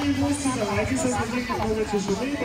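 Speech: people talking, with more than one voice at once.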